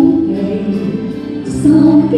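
A woman singing a Chinese ballad into a handheld microphone over instrumental accompaniment, amplified through a PA.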